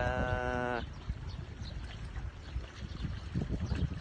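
A man's voice holding one drawn-out, steady note for under a second, which trails off an exclamation. It is followed by a low rumbling noise for the rest of the time.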